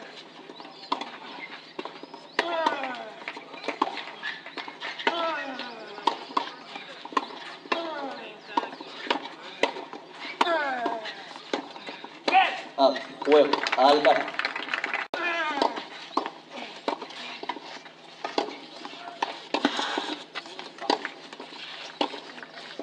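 Clay-court tennis rally: the ball is struck every two to three seconds, and each hit comes with a player's short grunt that falls in pitch. A burst of shouting and voices follows around the middle as the point is won.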